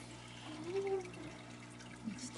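Quiet room tone with a steady low hum. About half a second in, a voice murmurs faintly and briefly.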